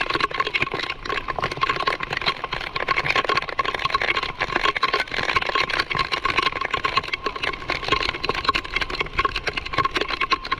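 Heavy rain falling, a dense, continuous crackle of drops striking close to the microphone, with a thin steady high tone running under it.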